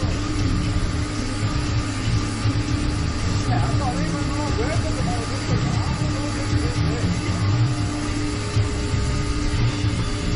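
Steady low background rumble with a constant hum that stops near the end, and faint voices in the background.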